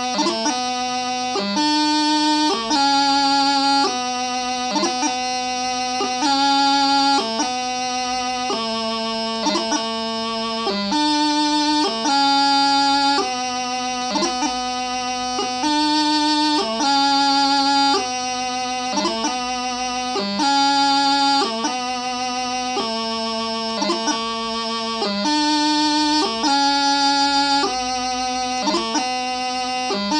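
Highland pipe practice chanter playing piobaireachd, the doubling of a variation: a single reedy line of held notes, each broken off by quick grace-note flourishes, with no drones.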